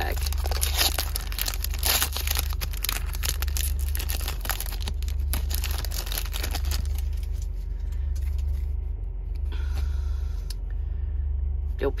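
Foil Pokémon card booster pack being torn open and its wrapper crinkled by hand, dense crackling for the first several seconds and then sparser as the cards come out, over a steady low rumble.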